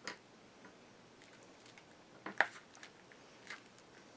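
Hands pressing a freshly glued paper cut-out flat onto a cardstock album page: a few faint paper rustles and light taps, the loudest about two and a half seconds in.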